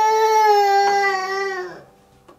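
Two-year-old wailing in a tantrum: one long, loud cry held at a steady high pitch for nearly two seconds, trailing off just before the end.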